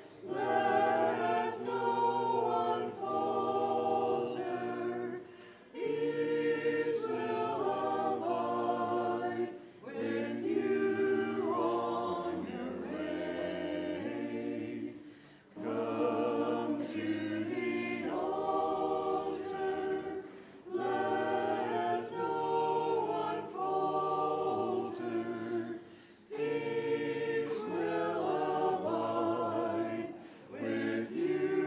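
Church choir singing Byzantine-rite liturgical chant a cappella in several-part harmony, in phrases of about five seconds with a brief breath between each.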